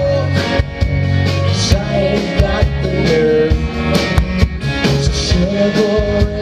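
Live rock band playing: a drum kit keeping a steady beat under electric and acoustic guitars and bass, with held melody notes over the top.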